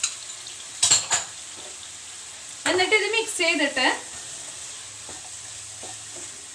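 Shredded cabbage and carrot sizzling steadily in a nonstick wok while being stir-fried, with a spatula knocking against the pan a few times in the first second or so.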